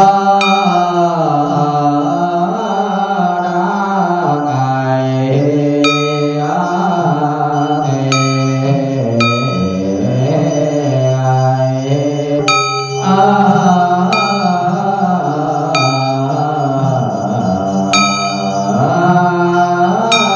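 A voice chanting a slow, drawn-out Vietnamese Buddhist ritual hymn in the tán style, its held notes gliding up and down. A small bell is struck several times at irregular intervals, ringing briefly over the chant.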